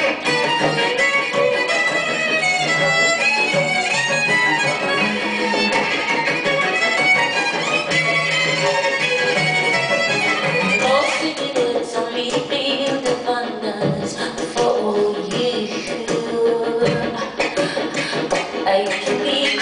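Live instrumental passage of piano with bowed strings (violins and cello), playing continuously with no singing.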